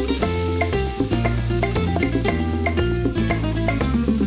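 Background music over sizzling from a stainless sauté pan of onions, peppers and cooking wine as the wine is lit and flames up, burning off the alcohol.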